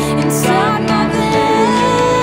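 Worship band playing a slow song: a singer holds a long note over piano, electric guitars and bass guitar.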